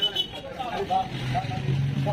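Men's voices talking in a street crowd over street traffic noise, with a low steady hum, like a motor vehicle's engine, starting about a second in.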